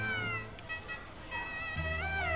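Instrumental background music: a bowed string instrument slides between notes over low held notes, dipping in the middle, with new bass notes entering near the end.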